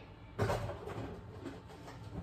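A knock about half a second in, then quiet handling noises as kitchen items are moved and a container is picked up.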